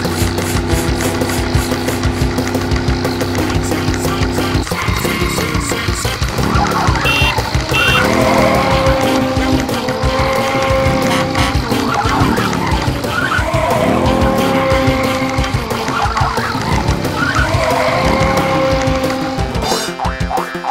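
Background music with cartoon car sound effects: an engine revving and zooming over and over, rising and falling in pitch, from about five seconds in.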